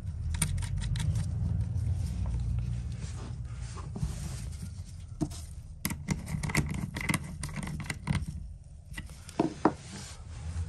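Small metallic clicks and scrapes of cable lugs and terminal nuts being fitted by hand onto a voltage sensing relay's terminal studs, with a small tool worked on a nut around the middle. A low rumble of handling noise sits underneath, strongest in the first few seconds.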